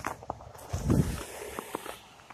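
Footsteps on a packed-snow road: a string of short, irregular steps, with a louder low thump about a second in.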